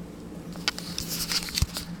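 Hard plastic model horses and their tack being handled: a quick run of small clicks and rustling clatter in the second half, with one dull thump near the end, over a steady low hum.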